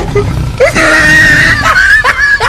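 A person screaming in fright: a short rising yelp about half a second in, then one high scream held for over a second.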